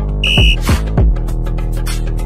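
Workout background music with a heavy beat, and a short high electronic beep about a quarter second in: the interval timer's signal that the exercise set is over and the rest period begins. The heavy beat stops about a second in and the music carries on.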